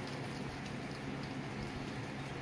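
Steady low background hum and hiss of room tone, with no distinct sound events.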